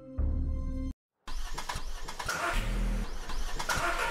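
A car engine: a low rumble, a sudden cut to dead silence about a second in, then the engine starting and running with a rough, noisy sound, under music.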